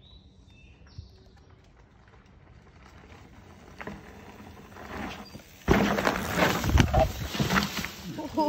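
Mountain bike coming down a dirt trail, faint at first, then a sudden loud scraping crash about two thirds of the way in as the bike and rider go down on the dirt.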